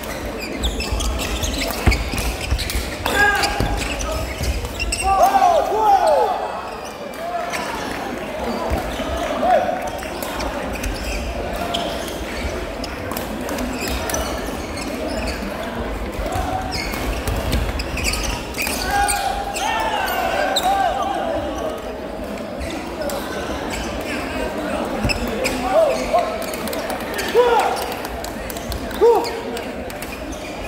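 Sports-hall sound during badminton play: sneakers squeaking on the court floor in short, sharp squeals, frequent sharp taps of rackets hitting shuttlecocks, and a steady murmur of voices echoing in the hall.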